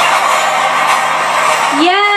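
Movie trailer soundtrack playing loudly: dense music mixed with voices. Near the end a voice slides up into a long held note.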